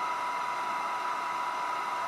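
Steady, even whirring noise of a fan-driven machine running in the room, with a constant high hum over it.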